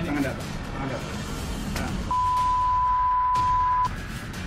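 Broadcast censor bleep: one steady, high beep, a pure tone, that cuts in about halfway through and lasts just under two seconds, blanking out the sound beneath it. Before it, voices and scuffling are heard over background music.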